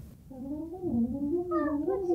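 A young child's long wordless whining cry, wavering up and down in pitch.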